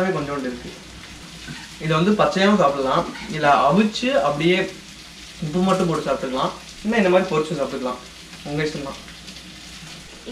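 Talking in several stretches over a steady sizzle of food frying in a pan on the stove, which comes through in the pauses.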